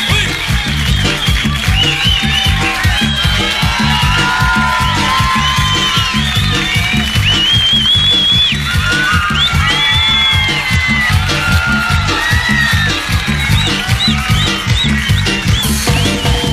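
Mexican banda music in an instrumental passage: a steady tuba bass line under brass and clarinet melody lines.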